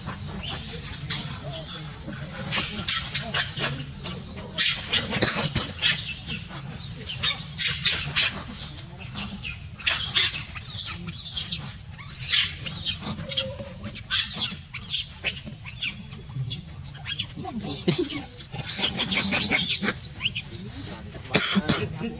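Macaques giving repeated short, high-pitched screams and squeals in quick bunches.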